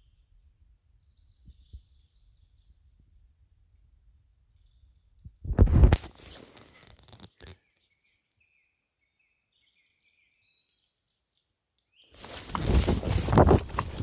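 Faint, short high bird chirps over a low rumble in a pine forest, broken twice by loud bursts of rustling noise: one about five seconds in lasting about two seconds, and one starting near the end.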